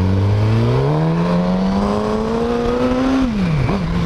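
Suzuki GSX-S 1000's inline-four engine pulling under acceleration, its pitch rising steadily for about three seconds, then dropping sharply near the end. Wind noise on the microphone runs underneath.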